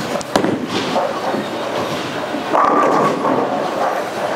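Track Archetype Hybrid bowling ball landing hard on the lane just after release, rolling down it, then crashing into the pins about two and a half seconds in.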